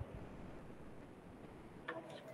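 Faint steady background hiss of an online call's audio, with a short soft click near the end.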